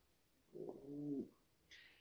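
Speech only: a single drawn-out spoken word in a low voice, with quiet room tone around it.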